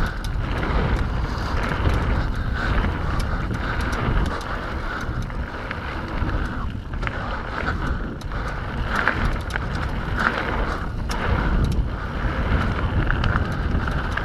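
Mountain bike descending a dirt singletrack at speed: wind rushing over the camera microphone, tyres rumbling on the dirt, and frequent clicks and rattles from the bike.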